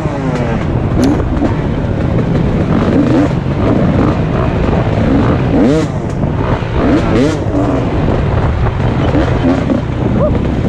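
2017 KTM 250 XC-W two-stroke dirt bike engine under load on a trail, revving up and down repeatedly as the throttle is worked, with sharp rises in pitch several times.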